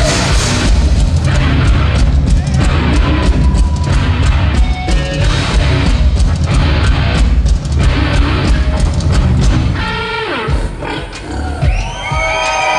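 Rock band playing live with distorted electric guitar, bass and drums, loud and heavy as heard from the audience. About ten seconds in the song breaks off and voices and shouts come through.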